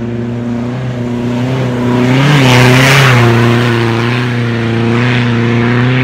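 Rally car engine running hard at high revs as the car speeds along a sandy dirt track, growing louder as it approaches. The engine and a rush of noise are loudest around the middle, after which the engine carries on steadily.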